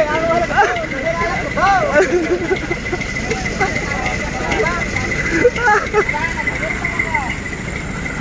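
Several people talking and laughing casually over the steady low running of a truck engine, with a thin, steady high tone above it.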